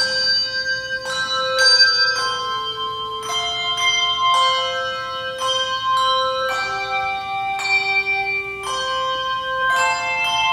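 Handbell choir playing a slow piece: chords of several bells struck about once a second, each ringing on and overlapping the next.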